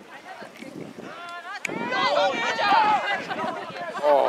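Several voices calling and shouting at once across a rugby pitch, quieter at first and busier from about one and a half seconds in, with a single sharp knock about one and a half seconds in.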